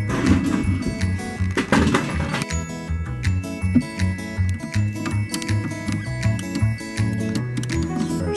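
Background music with a steady, pulsing bass line.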